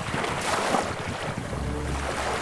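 Steady rushing sea-water noise, like ocean surf, with a low rumble coming in near the end.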